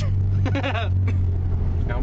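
Steady low drone of a moving car heard from inside the cabin, with a person laughing over it in the first second.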